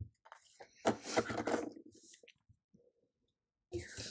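A click, then scratchy paper rustling about a second in as a correction tape dispenser is worked on a planner page. Near the end comes a short clatter and rustle as the dispenser is put down and the sheet moved.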